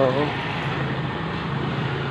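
A vehicle engine idling, a steady low hum under a general wash of street noise.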